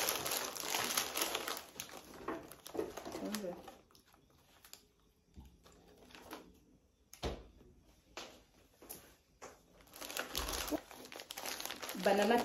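A cookie packet's plastic and foil wrapping crinkling as it is opened and handled, with a paper bag rustling. The crinkling is dense for the first few seconds, gives way to a quieter stretch with a few sharp crackles, and picks up again near the end as a plastic bag is handled.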